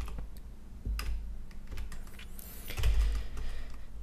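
Computer keyboard being typed on: a few separate keystrokes at a slow, uneven pace.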